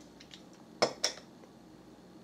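Two short, sharp clicks about a fifth of a second apart, about a second in, over faint room tone.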